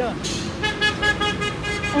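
A vehicle horn sounding one steady, sustained note for over a second, starting about half a second in, over the noise of passing road traffic.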